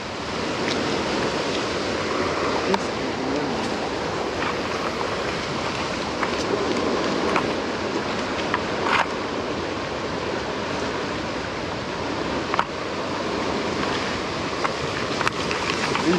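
Steady rushing noise of wind and water, with a few sharp light clicks scattered through it.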